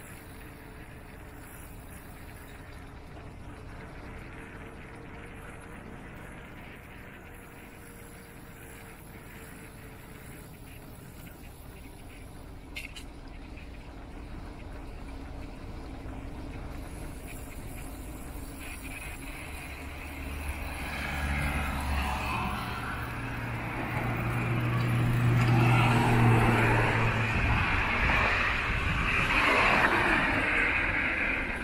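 Motor vehicles passing close by on a road. The sound is a steady faint outdoor hum at first, then engine hum and tyre noise build up from about two-thirds of the way in, loudest a few seconds before the end.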